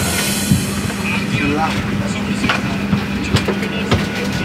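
Steady hum of an airliner cabin parked at the gate, with faint chatter from passengers in the aisle.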